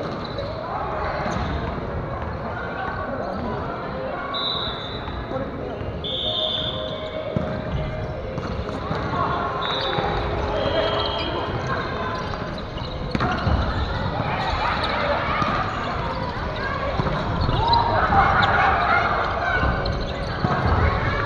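Indoor volleyball play on a wooden gym floor: players' voices and calls, with the ball being struck and bouncing, and short high squeaks of sneakers on the boards. The voices grow louder near the end.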